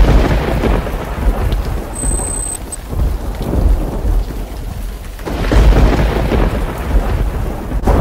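Thunderstorm: steady rain with rolling thunder. A loud crack comes at the start and another rumble swells about five seconds in.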